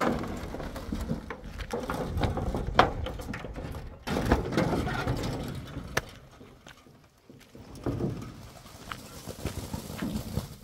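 Loaded steel wheelbarrow rolling over a dirt and gravel track, its wheel grinding and its tray rattling, with a sharp knock about three seconds in and another about six seconds in. It quietens after that.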